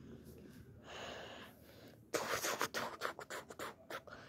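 Close-up handling noise: a soft breathy whoosh about a second in, then a run of scratchy rustles and small clicks as the phone and toys are moved over the carpet.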